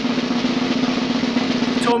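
A snare drum roll sound effect, dense and steady, cutting off near the end.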